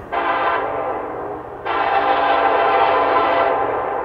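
Diesel freight locomotive's air horn sounding: a loud blast at the start that drops to a softer hold, then a longer, louder blast from about a second and a half in that fades out near the end.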